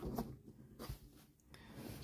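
Faint rustling and a few light taps of trading cards being slid across and set down on a tabletop.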